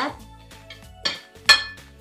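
Metal fork and spoon scraping and clinking against a ceramic plate while mixing chopped raw shrimp, with one sharp clink about one and a half seconds in.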